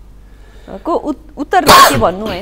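A few soft spoken syllables, then, shortly before the end, one short, loud, breathy vocal burst close to the microphone.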